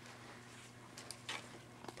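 Faint handling noise: a few soft rustles and small clicks from a clear plastic packet of fabric flowers being handled.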